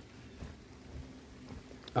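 Quiet outdoor background with a few faint, soft footsteps about half a second apart on mulch and bare dirt.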